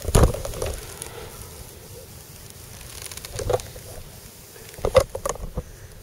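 Handling noise: a knock right at the start, then soft rustling and a few light knocks as the camera is moved.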